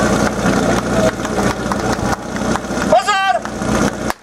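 A portable fire pump engine running steadily at idle, under crowd chatter. About three seconds in, a short pitched call rises and falls.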